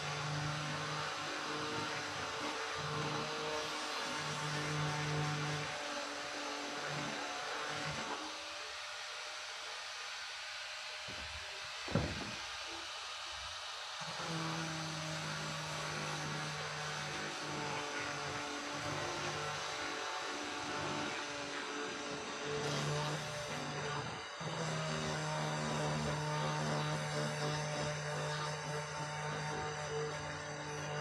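Angle grinder with a sanding disc running over wooden boards, a steady motor tone under the hiss of sanding. The motor drops out about eight seconds in and comes back about six seconds later, with a single knock in the pause.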